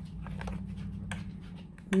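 Domestic sewing machine running steadily, its needle stitching the cuff of a quilted oven mitt with a quick, even rattle over a low motor hum.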